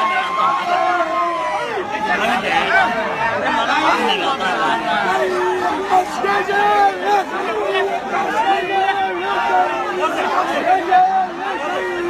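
A crowd of many people talking and calling out over one another, a dense, unbroken babble of voices.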